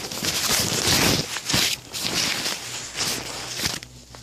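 Soundboard dust cover rustling and crinkling as it is folded up by hand, easing off near the end.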